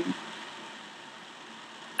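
Steady low hiss of room tone and recording noise.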